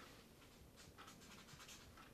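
Faint scratching of a pen writing on a sheet of paper, in short irregular strokes.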